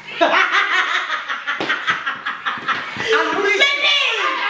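Several women laughing loudly together, with excited voices overlapping throughout.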